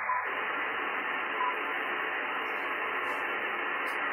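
Steady hiss from an amateur radio receiver's speaker tuned to single-sideband, heard between calls while listening for a reply through the RS-44 satellite. The hiss is cut off above a few thousand hertz by the receiver's narrow voice filter, fills out a moment after the start, and carries two brief faint whistles.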